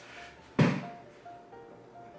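A single sharp thunk about half a second in, dying away quickly, over faint background music.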